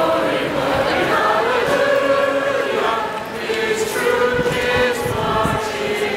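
A group of voices singing together in slow, long held notes, like a hymn sung in unison.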